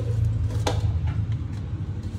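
Hand handling shredded durian flowers in a stainless steel colander, with two sharp clicks, one at the start and one about two-thirds of a second in, over a steady low hum.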